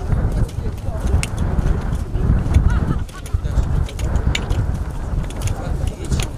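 Hoes chopping and scraping into dry, stony ground: a loose series of short knocks and clicks over a heavy low rumble.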